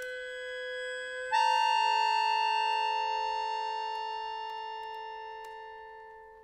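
Concert accordion holding sustained chords. A lower chord is held, then a little over a second in a loud, higher chord sounds sharply and is held, slowly dying away.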